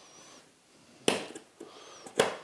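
A sharp click about a second in, then a few lighter taps and faint squeaks: a metal rule and its locating pin being handled and set into a hole in a wooden bench top.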